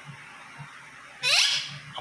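Indian ringneck parakeet giving one short, rising screech about a second and a quarter in.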